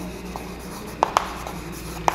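Chalk writing on a chalkboard: faint scratching with a few sharp taps of the chalk against the board, two of them close together about a second in.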